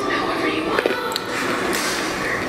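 An almond being bitten and chewed, a few short crunches, over continuous television sound in the background.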